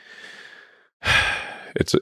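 A man's audible sigh: a soft exhale through the mouth and nose, just under a second long, with a faint whistling edge. It is followed by the start of his speech.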